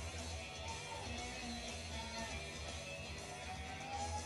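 Background music: a steady low bass beat under a melody line that rises and falls.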